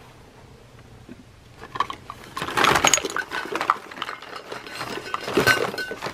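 Empty plastic cosmetic bottles, tubes, jars and small boxes clattering and knocking together as a plastic basket full of them is tipped out onto a towel. A dense jumble of clicks and knocks starts about two seconds in and keeps on, with louder bursts near the middle and near the end.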